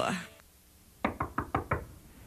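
A quick run of about five knocks on a door, rapped by knuckles, coming just after a music sting fades out.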